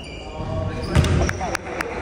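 A basketball hits once with a heavy thump about a second in, as a shot comes down at the basket. Several short sharp ticks follow as play resumes on the hardwood gym floor, with voices echoing in a large hall.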